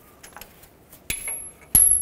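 Faint metal clicks, then a sharp metallic clink about a second in with a thin, high ringing that carries on, and another clink near the end. This is a loose steel mounting bolt from an engine knock sensor dropping onto a hard surface.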